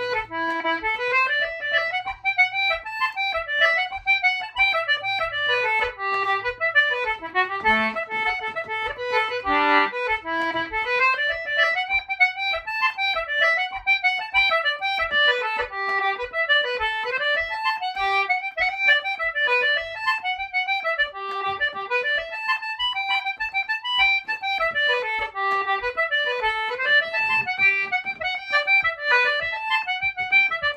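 Concertina playing a traditional Irish dance tune solo, a quick steady stream of reedy notes with the bellows pushed and drawn throughout.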